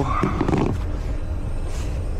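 Steady low rumble and hum from a powered-up business jet's onboard systems, with a brief muffled handling noise about half a second in.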